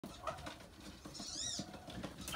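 A black swan cygnet giving a single high peep that rises and then falls, over faint scattered ticks.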